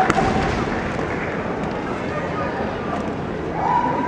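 Kendo bamboo shinai: one sharp clack at the start and a few fainter clacks, over a steady hubbub of voices, with a long drawn-out kiai shout near the end.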